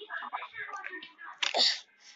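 A child's voice murmuring quietly, then a short, loud, breathy burst about a second and a half in.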